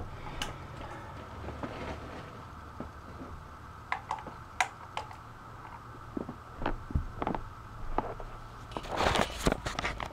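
Quiet room tone with a steady hum, broken by scattered sharp clicks and knocks. About nine seconds in comes a louder rustle of handling as the camera is lifted off the carpet.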